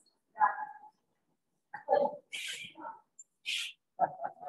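A few short, quiet spoken phrases from a person's voice, off-microphone, with silent gaps between them.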